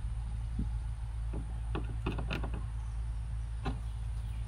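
A folded sheet of paper being picked up and handled, a few short crinkles and taps scattered through, over a steady low hum.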